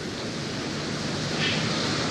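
A steady rushing noise with no speech, growing a little louder toward the end.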